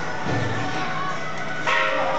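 Temple procession music with several bell-like metallic tones ringing steadily over a crowd, and a louder crash near the end.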